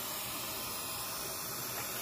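Steady hiss of a dental high-volume evacuator (HVE) suction running at the patient's mouth.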